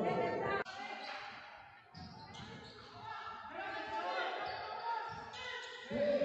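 Basketball bouncing on a hardwood gym court, with voices ringing in the large hall.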